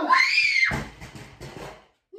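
A person's loud yell, sweeping up in pitch and back down, followed about three-quarters of a second in by a dull thump, then fainter scuffling.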